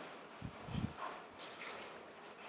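Faint typing on a computer keyboard: a few soft, low knocks about half a second in, then a few lighter clicks.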